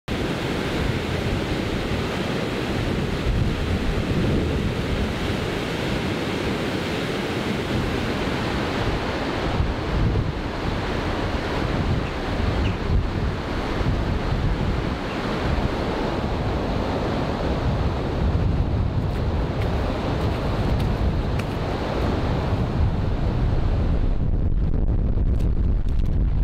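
A waterfall and a swollen river running high after heavy rain, giving a steady rush of water, with wind buffeting the microphone. Near the end the water sound falls away, leaving mostly wind rumble.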